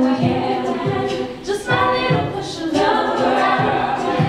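All-female a cappella group singing live in close harmony, backing a female soloist on microphone. Low thumps recur about twice a second under the chords, the steady beat of vocal percussion.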